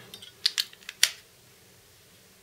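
An 18650 lithium-ion cell being set into a flashlight's plastic battery carrier: four or five light clicks and taps in the first second, the loudest just after a second in.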